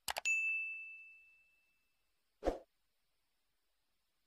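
Sound effects of a subscribe-button animation: a quick double mouse click, then a notification bell ding that rings out and fades over about two seconds. About two and a half seconds in comes a single dull pop.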